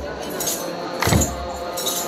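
Church procession music: a drum beaten at a slow pace, one strike about a second in, with jangling metal percussion, over a crowd of voices singing and talking.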